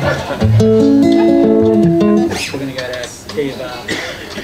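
Acoustic guitar playing a short picked-and-strummed phrase of a few changing chords, starting about half a second in and ringing out, fading after about two seconds.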